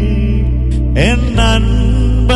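A man singing a slow devotional song into a microphone, holding long notes and sliding up in pitch about a second in, over a steady, sustained low accompaniment.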